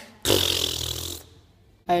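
A person's breathy huff close to the microphone, lasting about a second and fading out, followed by a short quiet.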